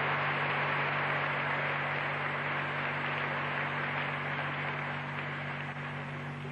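Steady hiss over a low mains hum from the recording and sound system, with no other event standing out.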